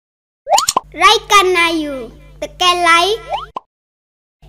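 Cartoon-style outro sound effects: a quick rising whistle-like glide, then two phrases of a high-pitched, chipmunk-like voice over a steady low hum, and another rising glide near the end.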